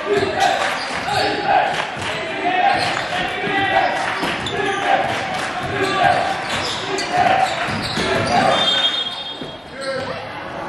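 Basketball dribbled on a hardwood gym floor, the bounces mixed with players' and spectators' voices calling out in the gym. A short high squeak comes near the end.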